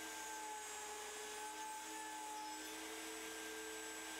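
Router spindle of a Legacy CNC machine running steadily: a faint, even whine with a few steady tones over a hiss.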